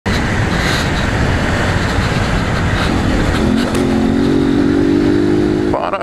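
Motorcycle engine running while riding, with wind rushing over the microphone. About three seconds in, the engine note rises briefly and then holds steady.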